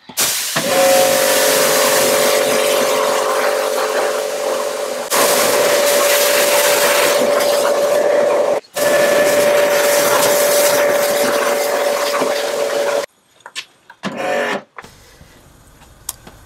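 Kärcher pressure washer running while its jet rinses a car: a steady pump whine under the hiss of spraying water. It gets a little louder about five seconds in, cuts out for an instant a few seconds later, and stops about three seconds before the end, leaving a few faint knocks.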